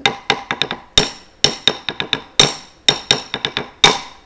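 Sharp percussion strikes with a short metallic ring, beaten in an uneven rhythmic pattern of about nineteen strokes, keeping time for a classical Indian dance. The loudest stroke closes the pattern near the end.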